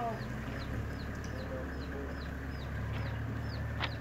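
SUV engine running with a low, steady rumble as it tows a loaded boat trailer forward, with a high chirp repeating about two to three times a second over it and a brief click near the end.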